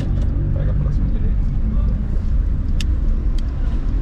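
Turbocharged 1.6 eight-valve engine of a 2007 VW Polo running at a steady throttle in second gear, heard from inside the cabin as a low, even drone.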